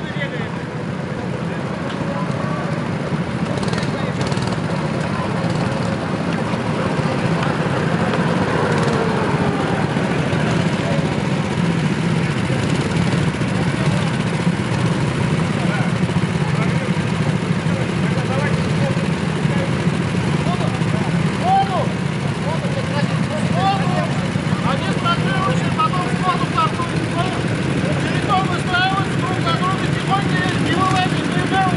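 Several go-kart engines running steadily at idle on the start grid, with people talking in the background.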